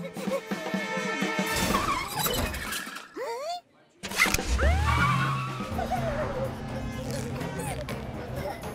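Cartoon soundtrack of music and wordless character voices. It drops almost to silence for a moment, then a seatbelt buckle clicks shut about four seconds in. A car engine then runs under the music.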